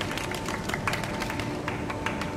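Scattered clapping from a few spectators after a point, with a faint steady tone underneath.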